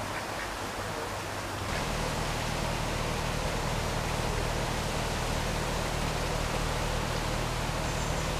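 A domestic duck quacking. About two seconds in, the sound gives way to a narrowboat's engine running steadily with a low hum.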